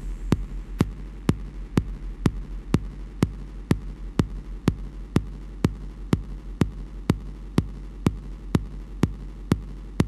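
Techno track: a sharp electronic click about twice a second, evenly spaced, over a steady low bass hum.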